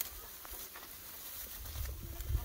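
Faint rustling and scattered small ticks of dry grass stalks as Berganês lambs graze, with a low rumble rising near the end.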